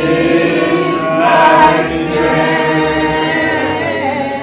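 Congregation singing a worship song together, many voices in chorus.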